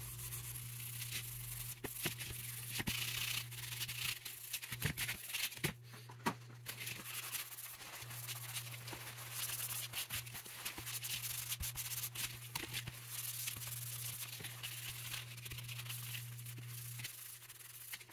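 Fine steel wool wet with boiled linseed oil rubbing over the wooden top handguard of a rifle: a continuous scratchy scrubbing with many small scrapes and clicks, over a low steady hum.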